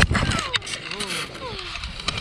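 A thump at the moment of a hard tandem paraglider landing in snow, followed by a person's short high-pitched falling cries over wind noise on the microphone.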